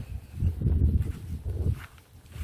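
Uneven low rumble of wind buffeting the phone's microphone while walking across a lawn, with footsteps on grass.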